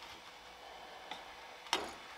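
Faint steady hum of an Ender 3 V2 3D printer's fans, with a light click about a second in and a louder click near the end.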